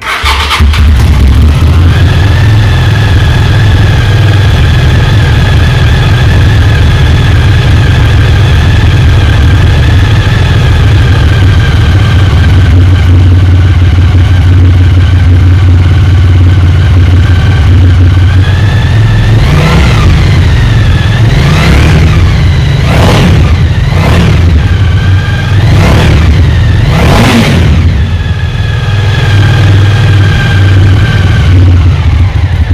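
1998 Suzuki TL1000S's 996 cc 90-degree V-twin starting and settling into a steady idle. From about twenty seconds in the throttle is blipped about six times, each a sharp rise and fall in revs, before it drops back to idle.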